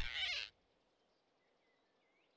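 A cartoon flying squirrel's startled squeak as it is grabbed, falling in pitch and cut off sharply about half a second in. Then only faint bird chirps.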